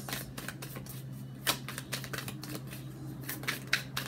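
Tarot cards being shuffled and handled, a quick, uneven run of light clicks and snaps, with sharper snaps about one and a half seconds in and near the end. A steady low hum sits under it.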